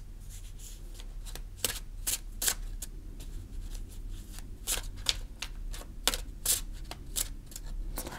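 A large deck of oracle/tarot cards being shuffled by hand: a run of irregular short flicks and slaps as the cards are worked between the hands.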